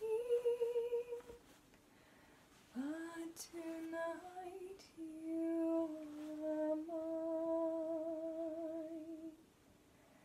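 A woman humming a slow lullaby melody a cappella, in short phrases with a pause after the first, then long held notes with vibrato that stop shortly before the end.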